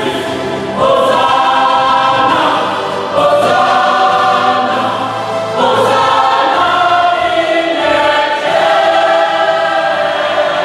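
A mixed choir of women and men singing in sustained full chords, with new phrases swelling in about a second, three seconds and six seconds in.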